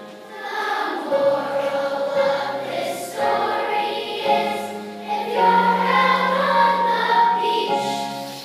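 Large children's choir singing a song, the phrases swelling and dipping in loudness.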